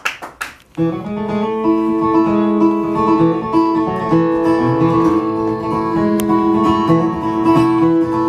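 Solo acoustic guitar playing a song's instrumental intro: a few strums at the start, a brief gap, then steady playing with ringing notes from about a second in.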